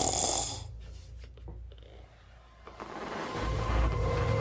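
A man snoring in his sleep, loudest at the start and fading, then a low rumble with faint steady tones building in the second half.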